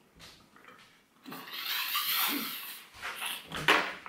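A man sniffing and snorting through a bleeding nose: one long noisy sniff, then a short, sharp snort near the end.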